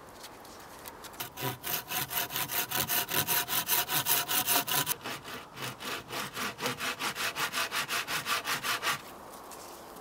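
Hand saw cutting wood in quick, even back-and-forth strokes. The sawing starts about a second in, pauses briefly halfway and stops about a second before the end.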